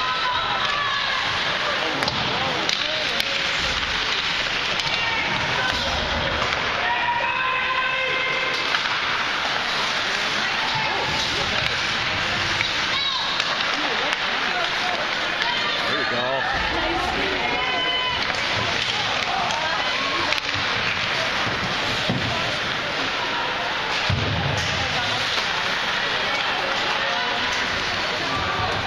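Ice hockey rink ambience: indistinct spectators' voices over a steady hall noise, with a few sharp knocks of sticks and puck on the ice.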